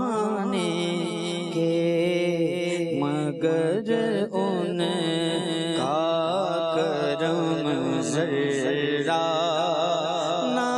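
A man singing an Urdu naat (devotional poem) into a microphone, unaccompanied by instruments, with long wavering melismatic phrases over a steady low drone.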